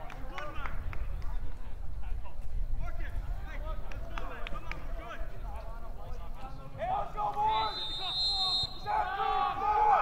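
Players and spectators shouting and calling across an outdoor soccer field, with scattered sharp knocks, growing louder from about seven seconds in.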